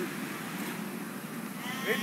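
A drawn-out call with a wavering pitch near the end, over a steady background hum.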